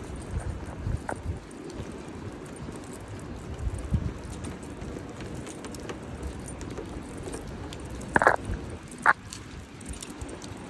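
Rainy city street heard while walking on wet pavement: a steady hiss of rain and traffic, with footsteps and handling bumps. Two short, louder, higher sounds come near the end.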